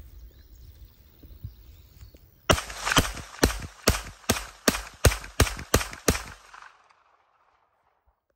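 Feather Industries AT9 9mm carbine fired about ten times in quick succession, roughly two to three shots a second, starting a couple of seconds in.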